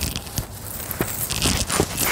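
Shoes scuffing and sliding in loose sandy dirt as someone scrambles up a slope: a run of irregular crunching steps.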